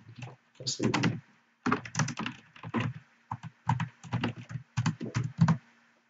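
Typing on a computer keyboard: a run of about twenty separate keystrokes at an uneven pace, with short pauses between groups of keys.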